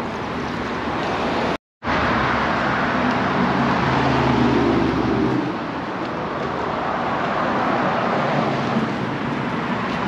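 Passing road traffic: steady tyre and engine noise, with one vehicle's engine louder from about three to five seconds in. The sound cuts out briefly about one and a half seconds in.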